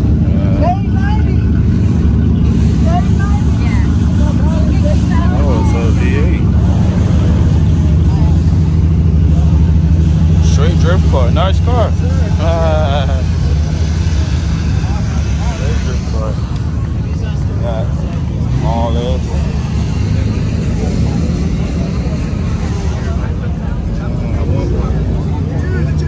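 Mopar Magnum V8 engine idling loudly and steadily, easing off a little partway through, with people talking over it.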